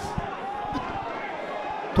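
Pitch-side sound of a football match in play: a couple of dull thuds of the ball being kicked, under faint distant shouts from the players.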